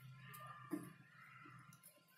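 Near silence with a few faint clicks and light handling noise as fabric is arranged under a sewing machine's presser foot.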